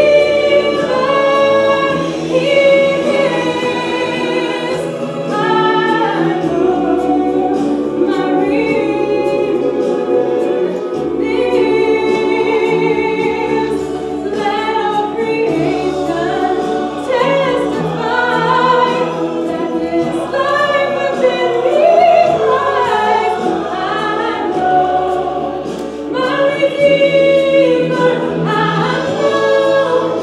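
A woman singing a gospel song solo into a microphone, with instrumental accompaniment carrying sustained bass notes under her voice.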